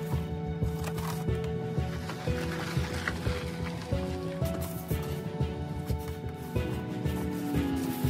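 Background music with a steady beat and held notes that change pitch every second or so.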